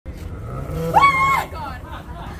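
A woman's startled scream about a second in: a short high-pitched shriek that rises and is held for about half a second, her fright at being jumped by a prankster.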